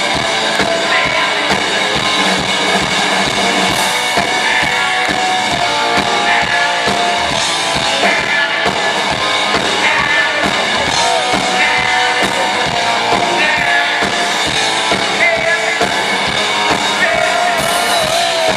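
Live rock band playing loudly, with a drum kit beating steadily under guitar and a vocal line, as heard from the audience.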